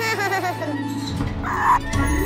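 Cartoon sound effects over children's background music: a short non-word character vocalisation whose pitch wobbles up and down, then a brief burst of noise shortly before the end.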